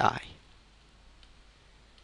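A man's voice finishing a word, then a faint steady room tone.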